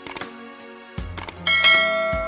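Sound effects of an animated subscribe button: short clicks near the start and about a second in, then a bell chime that rings out about one and a half seconds in and slowly fades, over soft background music.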